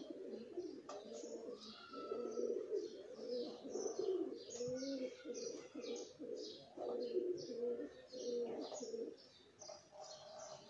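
Birds calling: low, wavering cooing with many short, high chirps repeating over it.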